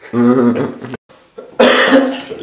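A person laughing, then coughing loudly about a second and a half in.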